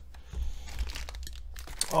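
Clear plastic zip bag crinkling and rustling irregularly as hands pick up and handle a coiled cable inside it.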